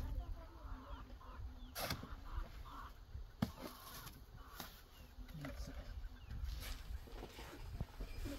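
Hand masonry work with cement mortar: a shovel scraping wet mortar and a trowel working it onto stone, with a few sharp knocks. A steady low rumble of wind on the microphone runs underneath.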